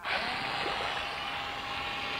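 Cordless electric drill switched on suddenly and running at a steady speed with its chuck in shallow water. Its motor tone rises briefly as it spins up, then holds steady over the noise of churning, splashing water.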